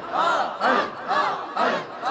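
Crowd of men chanting in unison: one short call, rising and falling in pitch, repeated about twice a second.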